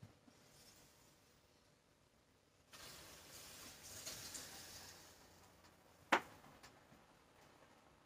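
Lid coming off a steaming pan of boiling ramen: a faint hiss of steam and boiling water for about three seconds, then one sharp clink of the metal-rimmed lid.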